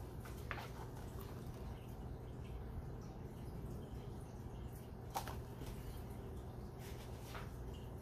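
Quiet room tone with a steady low hum, broken by three faint, brief rustles as a hardcover picture book is handled, held up and lowered.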